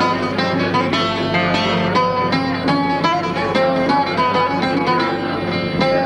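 Rebetiko instrumental introduction played live on a bouzouki with acoustic guitar accompaniment: a quick run of plucked notes over strummed chords.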